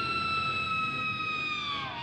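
A high, held electric guitar note in a heavy metal song, sliding slowly down in pitch and then dropping steeply near the end, with a siren-like sound, over a faint low band part.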